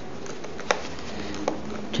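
A small screwdriver working a bottom-case screw on a 2012 MacBook Pro's aluminium case. Two faint clicks over a quiet room hiss, the sharper one under a second in.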